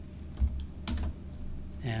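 A few separate keystrokes on a computer keyboard.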